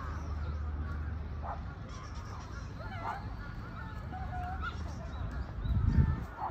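Scattered bird calls, short and curving, with one held note a little past the middle, over a steady low rumble. A low thump comes just before the end.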